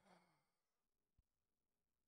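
Near silence: the audio drops out, with only a faint fading tail at the very start.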